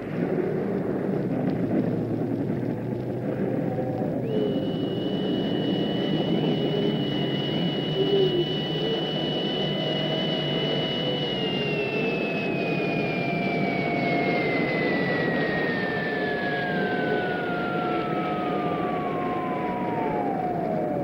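Cartoon sound effect of a spacecraft's rocket engine: a steady rushing roar, joined about four seconds in by a high whistle that holds, then glides steadily down in pitch through the second half as the craft descends to land.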